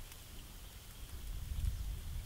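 Quiet background: a low, uneven rumble with no distinct events.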